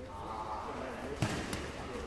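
A sharp thump on the grappling mats a little past a second in, followed by a lighter knock, as grapplers push and pull in a standing clinch, with voices in the background.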